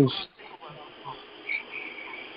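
Faint high-pitched insect chirping over steady hiss on a narrow-band online call line, with one chirp standing out about one and a half seconds in, after a word ends at the start.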